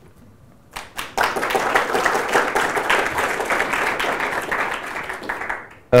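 Audience applauding: the clapping starts about a second in, holds steady, then dies away just before the end.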